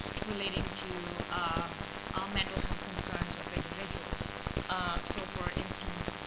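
Speech heard only in broken fragments under a dense, steady crackle and hiss: the conference recording is badly degraded by clicking noise.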